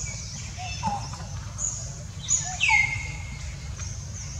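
Infant long-tailed macaque crying in short, high whistly calls. The longest call, just past the middle, falls in pitch and then holds. A steady low hum runs underneath.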